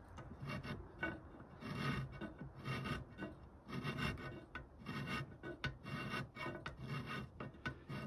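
Bastard file scraping across the edge of a metal enlarger negative carrier, in repeated forward strokes a little under a second apart, widening the carrier's opening.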